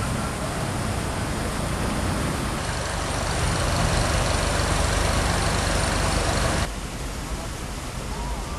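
A motor engine running steadily under a rushing noise. It grows louder a few seconds in and cuts off abruptly near the end.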